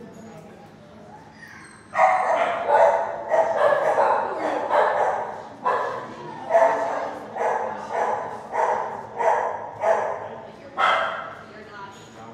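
A dog barking repeatedly, about one and a half barks a second. The barks start about two seconds in and stop near the end.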